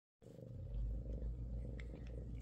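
Bengal mother cat purring steadily, a low pulsing rumble, while nursing her litter of kittens.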